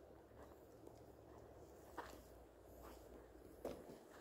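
Near silence with faint footsteps on grass drawing closer, and a couple of soft clicks, one about two seconds in and one shortly before the end.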